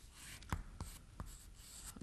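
Chalk writing on a chalkboard: faint scratching with three short, sharp taps of the chalk in the middle.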